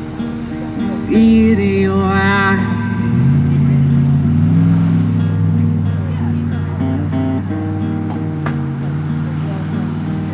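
Acoustic guitar ringing out in sustained chords with a young male singer's voice. About a second in, he holds one long, wavering sung note.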